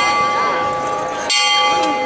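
The throne's hand bell rings: a single sharp stroke about a second and a half in, over the ringing left from the strokes just before. It is the signal for the bearers to lift the processional throne. A crowd murmurs underneath.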